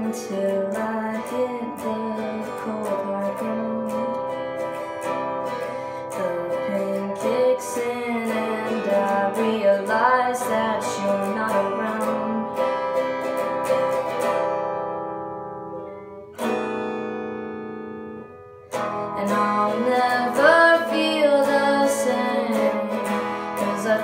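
Instrumental passage of a song: acoustic guitar strumming under the backing. About fourteen seconds in the music fades down, a held chord breaks in sharply two seconds later, and the full accompaniment comes back around nineteen seconds before the chorus.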